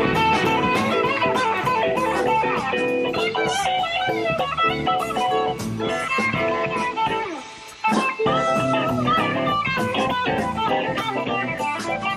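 Live rock band playing, electric guitar prominent over drums and keyboards, from a late-1970s live radio broadcast. The sound dips briefly about two-thirds through, then the band carries on.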